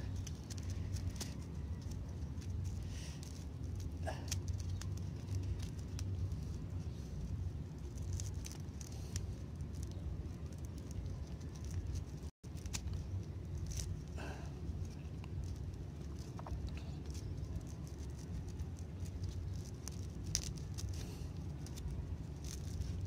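Faint rustling and rubbing of three-strand rope as its strands are tucked and pulled tight by hand, over a steady low hum.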